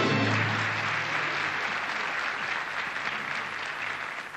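A held final chord of music ends just after the start, and an audience breaks into applause that slowly fades.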